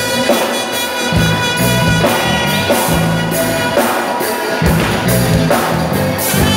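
Live band playing an upbeat cover song, with a drum kit and a djembe hand drum keeping a steady beat under bass and sustained instrument tones.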